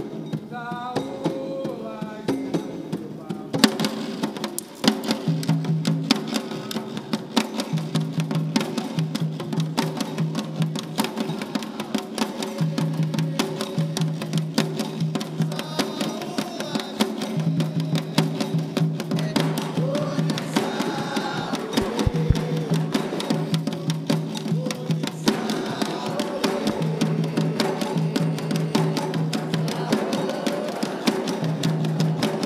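An ensemble of atabaque drums playing a Candomblé rhythm. The drums are struck with sticks and bare hands in a steady, driving pattern, and the playing gets fuller about four seconds in.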